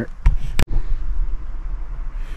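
Gear-handling noise on the camera's microphone as the metal detector is picked up: two sharp knocks in the first second, with a low rumble throughout.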